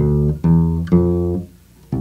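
Electric bass guitar playing single plucked notes of a walk-up toward F on the D string: two new notes about half a second apart, each ringing until the next. The playing stops about a second and a half in.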